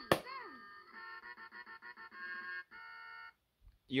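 2001 LeapFrog Learning Drum toy: a hand slaps the drum pad and the toy's recorded voice counts "seven" through its small speaker. About a second later it plays a short electronic tune of quick notes that ends on a held chord and cuts off.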